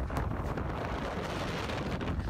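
Hurricane winds buffeting the camera microphone: a steady rush of noise with a heavy low rumble.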